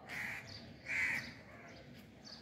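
A bird calling twice outdoors: two short, noisy calls less than a second apart, the second about a second in.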